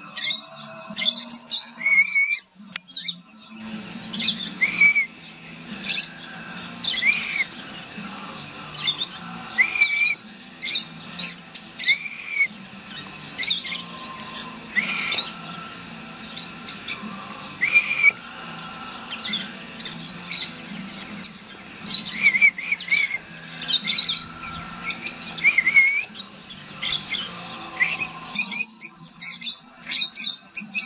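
Rosy-faced lovebirds calling: a rapid run of short, shrill chirps and squeaks, with a low steady hum underneath for most of the time.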